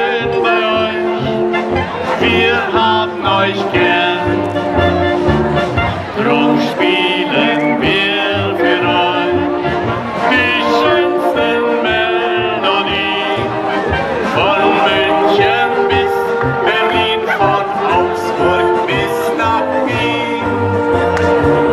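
Festive brass music playing steadily at a lively pace.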